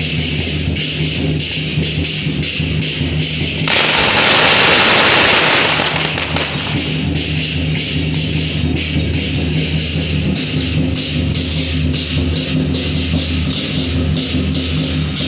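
Loud procession music with a steady beat. About four seconds in, a string of firecrackers crackles densely for about three seconds, louder than the music, then the music carries on alone.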